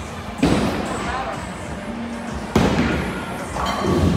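Bowling-alley din: two heavy impacts about two seconds apart, each trailing off into a rumble, typical of balls hitting the lanes and pins, with voices in the background.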